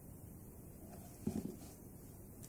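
A cat's paw batting at a beetle on carpet: a brief cluster of soft taps a little past the middle, over low room hiss.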